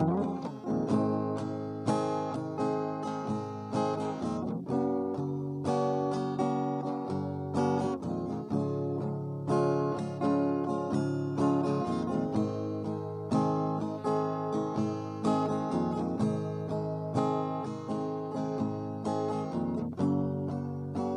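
Capoed acoustic guitar strummed steadily in an instrumental passage of the song, chords changing every second or two with a loud stroke about once a second.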